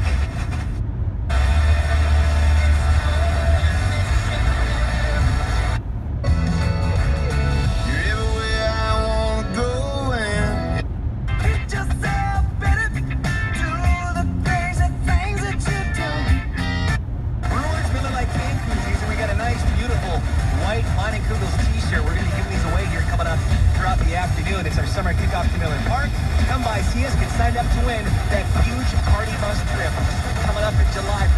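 Car FM radio being stepped up the dial, playing broadcast music and talk. The sound cuts out briefly each time the tuner moves to the next frequency, four or five times in the first half, then holds steady on one station.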